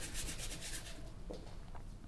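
Paintbrush bristles scrubbing acrylic paint, a run of quick scratchy strokes that thins out after about a second.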